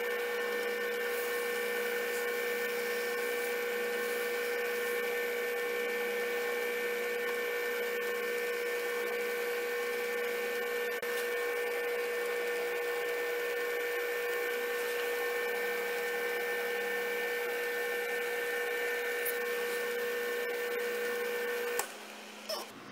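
Wood lathe running steadily at its lowest speed for buffing: an even motor hum and whine that cuts off near the end.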